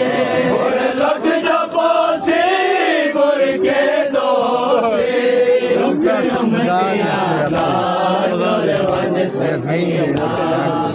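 Crowd of male mourners chanting a Punjabi Muharram lament (nauha) together, a continuous sung recitation of many voices.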